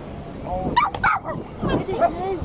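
A dog yipping and whining in short high calls. The calls come in two bursts, the first about half a second in and the second near the end.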